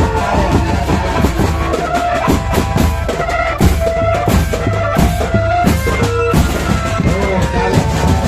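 Drum band music: marching drums beaten in a busy, steady rhythm, with a held melody line playing over the drums.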